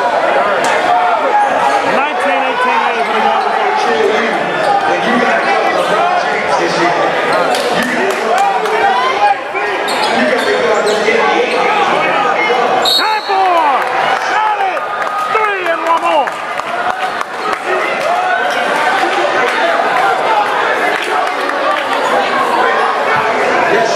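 Basketball game in a gym: a ball bouncing on the hardwood court, with chatter and shouts from players and spectators throughout, echoing in the hall.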